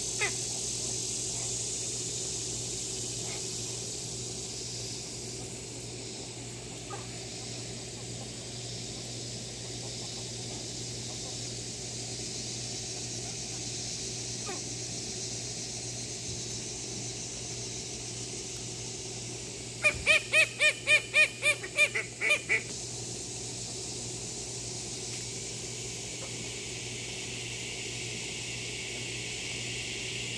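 Domestic duck giving a quick run of about nine loud quacks over two and a half seconds, a little past the middle, over a steady high background hiss.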